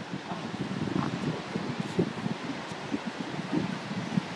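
Wind buffeting the camera microphone outdoors: an uneven, fluttering low noise with no clear events.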